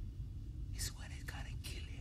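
A man's whispered speech in hissy, breathy bursts about a second in, over a low steady rumble.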